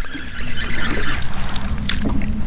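Steady noise of wind and water around a small fishing boat, with a faint low steady hum under it. A short sharp splash comes near the end as the hooked crappie breaks the surface.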